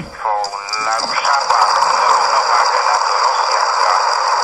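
A voice on the radio breaks off about a second in, and a steady hiss of radio static takes over, as loud as the speech around it.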